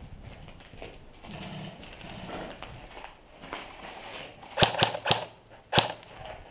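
Footsteps and scuffing on a hard floor, then a quick run of three loud sharp cracks and a single crack about half a second later.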